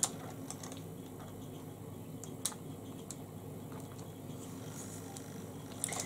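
Quiet room tone with a few faint, scattered short clicks, like small objects being handled.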